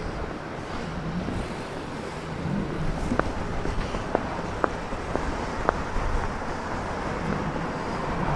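Street background of road traffic, with wind on the microphone. A few short ticks come through in the middle.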